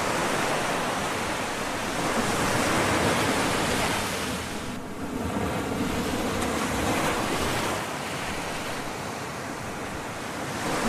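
Ocean waves washing ashore: a steady rush that swells and eases every few seconds, with a lull about halfway through.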